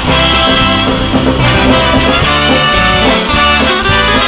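Live band playing an instrumental break without vocals: drums and bass keeping a steady beat under electric guitar and brass.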